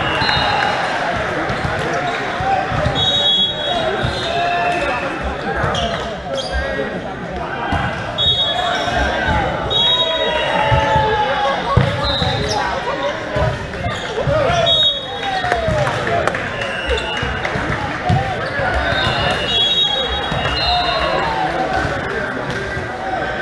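Indoor volleyball rally sounds in a large hall. The ball is struck and bounces with dull thuds, and sneakers squeak briefly and repeatedly on the court floor, under a steady din of players' and spectators' voices.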